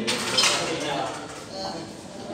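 Voices talking in a gym, with metal weights clinking now and then; a brighter clink comes about half a second in.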